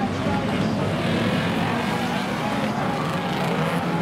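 Many banger racing cars' engines running and revving at once as the pack jostles round the track, a dense mix of engine notes rising and falling over one another.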